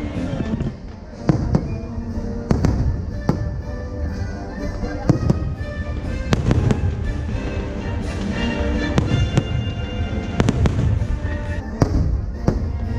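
Aerial fireworks shells bursting in a rapid string of sharp bangs, roughly one to two a second, with the show's music soundtrack playing underneath.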